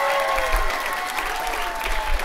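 Audience applauding, with cheering voices rising and falling over the clapping.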